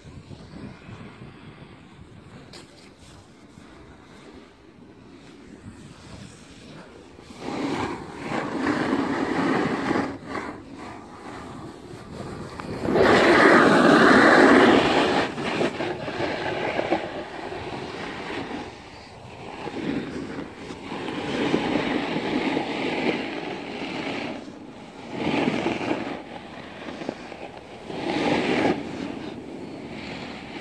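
Rushing, scraping noise of sliding down a groomed snow slope, with wind on the phone's microphone. It is faint at first, then comes in surges, loudest about halfway through.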